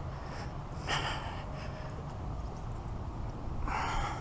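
A man breathing, with two audible breaths about a second in and near the end, over a low steady rumble.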